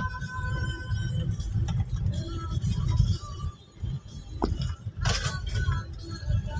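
Low rumble of a car driving on a rough dirt road, heard from inside the cabin, with music playing along with it. There is a single sharp click about four and a half seconds in.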